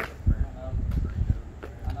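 Men's voices in conversation over uneven low background noise.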